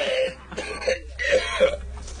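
People laughing in short, broken, breathy bursts, in reaction to a joke on a talk-radio broadcast.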